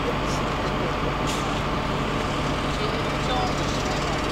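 Mobile crane's engine running steadily.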